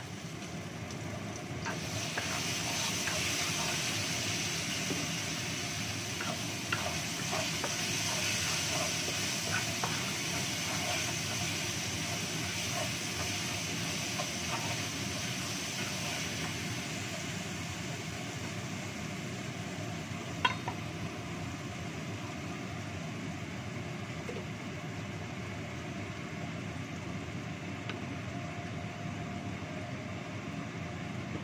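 Ground garlic-and-shallot spice paste sizzling in hot oil in a wok while a wooden spatula stirs and scrapes it. The sizzle swells about two seconds in and eases off in the second half, with a single sharp knock a little past two-thirds of the way through.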